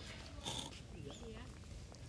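Faint, distant talking over quiet outdoor background, with a brief unidentified sound about half a second in.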